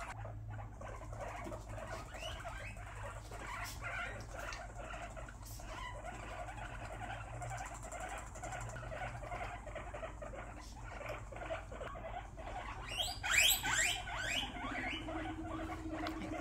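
Guinea pigs vocalizing during the introduction of a new pig to the herd: a continuous stream of short, repeated calls, with a louder burst of rising squeaks about thirteen seconds in.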